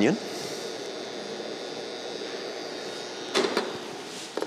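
Sliced onion sizzling in butter and olive oil in a frying pan, as a steady hiss. A short clatter comes near the end.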